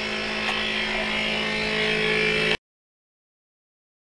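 Taig CNC mini mill running a profile cut: a steady machine whine with several held tones from the spindle and stepper motors. It stops abruptly about two and a half seconds in.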